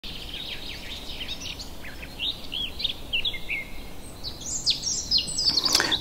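Birds chirping: many short chirps rising and falling in pitch, coming thicker toward the end, over a faint steady background hiss.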